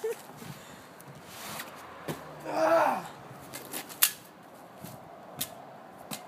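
Sharp single cracks about four and five and a half seconds in, the sound of a Daisy Red Ryder lever-action spring-air BB gun firing. A short vocal sound, falling in pitch, comes a little before them.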